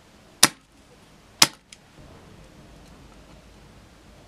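Spring-loaded desoldering pump (solder sucker) firing twice, about a second apart, with two sharp snaps as it sucks melted solder off a resistor's pads to free it from the circuit board.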